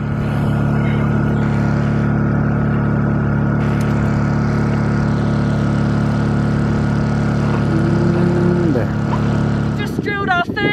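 An engine running steadily, a loud, even drone with a low hum that holds unchanged throughout.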